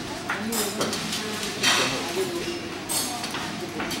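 Low voices in the room, with three short, bright noises about a second apart from a steel flambé pan and the utensils at its burner.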